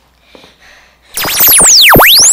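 A loud electronic whoosh sound effect used as an edit transition, starting about halfway through after near quiet: a sweep of many tones falling and then rising again.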